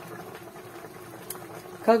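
Pork belly slices simmering in beer in an open frying pan: a steady soft bubbling, with one faint click about a second in.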